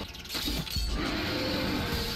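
Cartoon fight soundtrack: dramatic score with a crashing, shattering sound effect in the first second, followed by a steady musical swell.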